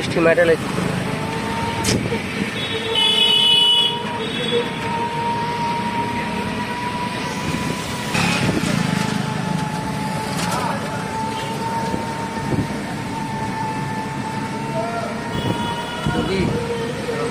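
Ride noise from inside a moving open-sided rickshaw on a wet road, with passing traffic and a thin steady whine throughout. A vehicle horn honks for about a second, three seconds in, and again briefly near the end.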